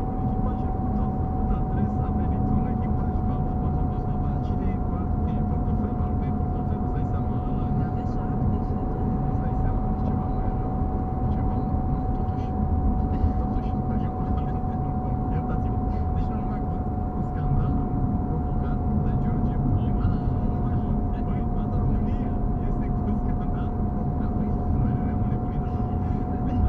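Cabin noise of a moving car picked up by a dashboard camera: steady road and engine rumble, with a constant thin whine held at one pitch and light rattles.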